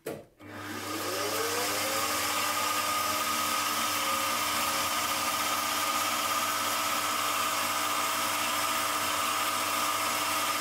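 Milling machine spindle with a twist drill starting up about half a second in, rising in pitch for a second or two, then running at a steady speed with a constant whine and hum.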